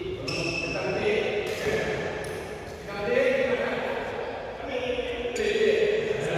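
Several men talking and calling out to each other on a badminton court between rallies.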